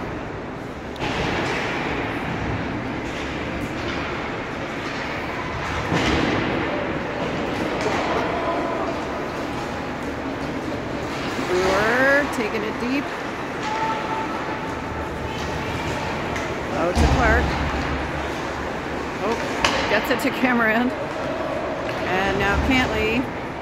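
Ice rink game sound: spectators in the stands talking and calling out over a steady hall hum, with a few sharp knocks of sticks and puck on the ice.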